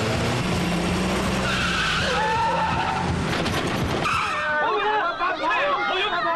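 Film soundtrack of a vehicle chase: a loud, dense wash of engine and tyre noise with skidding squeals. About four and a half seconds in, the engine noise drops back and many voices shout and scream.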